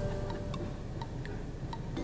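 Soft, light ticking, a few ticks a second.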